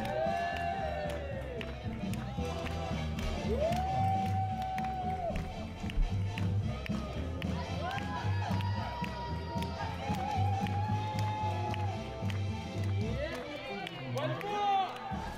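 Swing dance music with a steady beat from the rhythm section and long held melody notes that slide into pitch.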